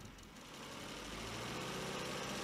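Car engine running steadily, faint at first and slowly growing louder.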